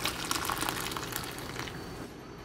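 Hot water poured from a kettle in a steady stream into a ceramic mug of frothed milk, the splashing pour tapering off near the end.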